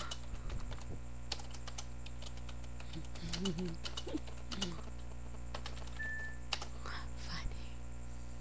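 Computer keyboard being typed on: scattered, irregular key clicks over a steady low hum.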